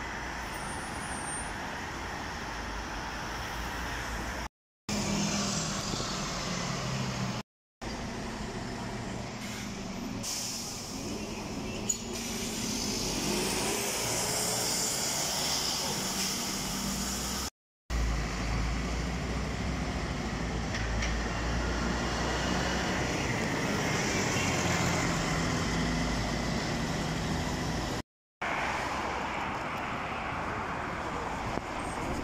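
Diesel city buses running and pulling away from stops, engines rising in pitch as they accelerate, with a short air-brake hiss. The sound breaks off in several brief silences where separate recordings are cut together.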